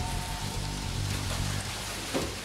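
Water splashing and churning in a fish tank as a salmon is chased and scooped with a dip net, with background music's low notes underneath.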